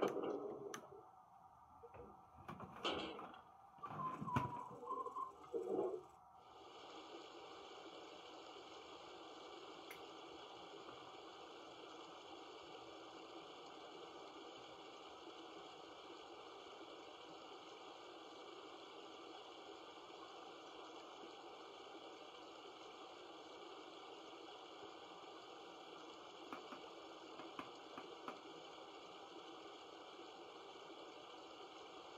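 HO-scale Broadway Limited operating water tower's sound effect of running water: after a few brief sounds in the first six seconds, a steady, even hiss of flowing water plays on without pause, the tower set to its mode in which the water flows indefinitely.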